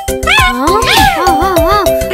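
Cartoon puppy's high cries, a string of short rising-and-falling calls, over bouncy children's background music with a steady beat.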